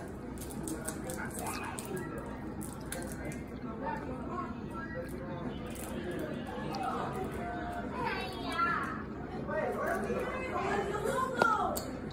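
Indistinct voices and chatter with no clear words, with faint background music.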